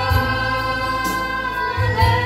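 Gospel singing: a woman's voice holds one long note over electronic keyboard accompaniment with bass and a steady beat, moving to a new note near the end.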